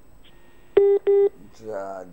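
Two short, loud electronic beeps in quick succession, each a steady buzzy tone of about a quarter second, heard over a telephone line.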